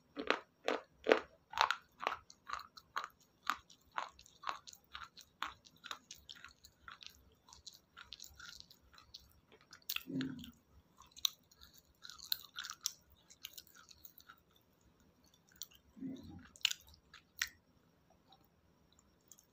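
Close-miked crunchy chewing of raw green salad vegetables: crisp crunches about two or three a second for the first several seconds, then slower, softer, wetter chewing, with two low, dull mouth sounds around ten and sixteen seconds in.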